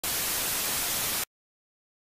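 Television static hiss, a steady hiss that lasts just over a second and cuts off abruptly into silence.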